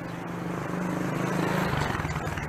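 A motor vehicle's engine passing close by on the street: it grows louder to a peak about one and a half seconds in, then its pitch drops a little as it goes past.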